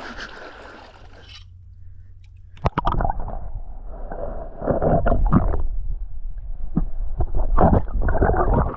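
Three-prong hand spear jabbed into a sandy seabed, heard through a camera that has gone underwater. The outdoor wind and water hiss cuts off about a second and a half in, and from near the middle muffled knocks, thuds and rumbling come as the prongs strike and stir up the sand.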